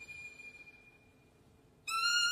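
Solo violin holding a very high, quiet note that sinks slightly in pitch and fades away about a second in. Just before the end a much louder new note, lower in pitch, starts sharply.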